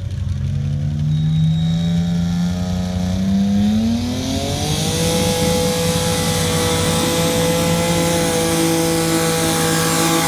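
Small pulling tractor's engine at full throttle hauling a weight-transfer sled down the track: its pitch climbs steadily for about five seconds, then holds high and level for the rest of the run.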